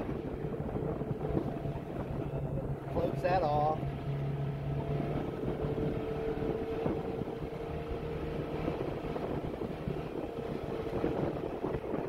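ATV engine running steadily as it is ridden. Its low hum fades about five seconds in while a higher steady tone carries on.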